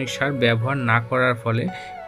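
A person's voice speaking over soft background music.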